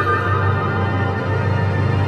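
Symphony orchestra playing slow contemporary classical music: sustained chords held over a steady low bass.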